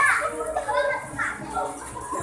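Young children's voices, chattering and calling out over one another as they play.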